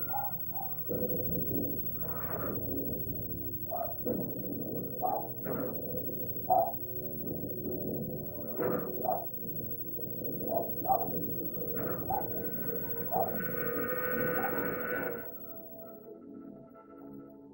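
Horror-film sound effects: a run of short, warped, cry-like wails over a low rumble, with a denser sustained wail near the end that cuts off suddenly.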